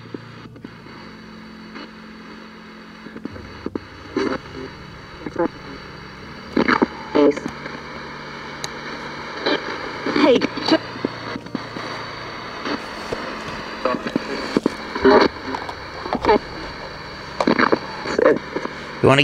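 Spirit box sweeping through radio stations: a steady static hiss, with short clipped fragments of broadcast voices breaking in every second or so from a few seconds in.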